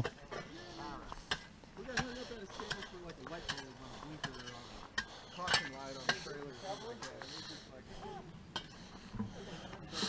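Faint voices of several people talking at a distance, with scattered light clicks and clinks.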